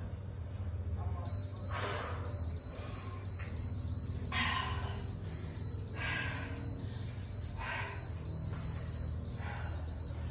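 A steady, thin, high-pitched tone like a buzzer starts about a second in and holds until the end, over a low steady hum. Short puffs of breath from a person exercising come every second or two, about five in all.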